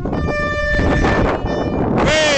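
Horn of an approaching diesel multiple unit train, one steady tone held for about a second, with wind noise on the microphone.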